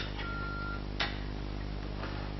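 Telephone answering machine at the end of a played message: a click, a short steady beep, then another click about a second in, over a low hum.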